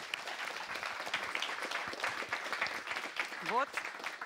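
Audience applauding steadily, with a short rising voice sound about three and a half seconds in.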